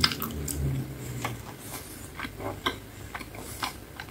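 Close-miked chewing of a soft bite of french fry, with a sharp click as the bite goes in and then scattered wet mouth clicks and squishes.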